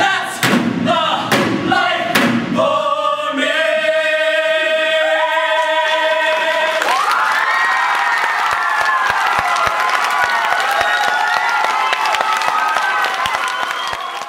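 A stage cast singing in chorus, with several heavy thumps in the first few seconds, then holding a final chord. About seven seconds in the song gives way to an audience cheering, applauding and screaming.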